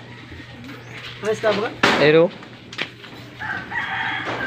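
A rooster crowing, loudest about two seconds in, then a fainter, steadier crow beginning near the end.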